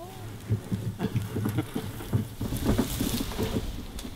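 Plastic wheelie bin, rigged as a bee catching bin with a funnel on its lid, being wheeled over rough dry ground, its wheels and body bumping and rattling irregularly.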